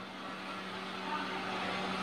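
Faint steady hum with a low background hiss, in a pause between spoken phrases, growing slightly louder through the pause.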